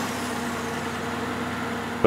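A motor vehicle engine running steadily at idle, holding an even tone.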